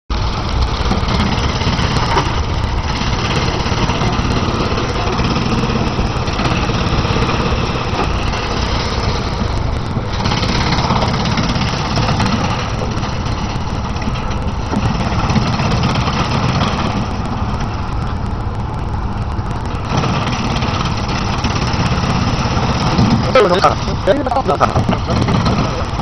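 Drum wood chipper running loud and steady while branches are fed in on its conveyor; the noise thins for a few seconds past the middle. A voice is heard near the end.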